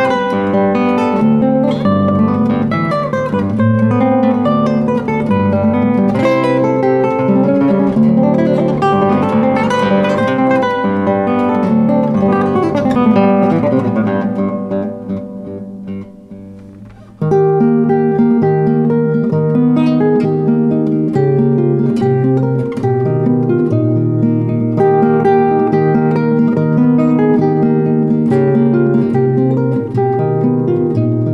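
Solo nylon-string classical guitar played fingerstyle. About fourteen seconds in the notes die away into a short near-pause, then the playing comes back abruptly with a steady, evenly repeating bass pattern.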